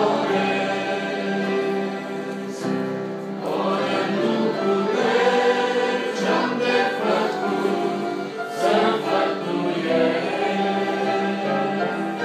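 Church choir and congregation singing a hymn together, led by a man singing into a microphone, with an instrumental ensemble accompanying.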